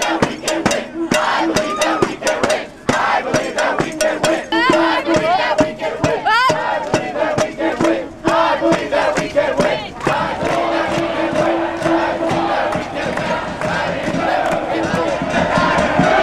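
Hand-beaten drums struck rapidly in a marching rhythm, over a crowd of protesters chanting and shouting. The drumming thins out about ten seconds in, leaving mostly the crowd's voices.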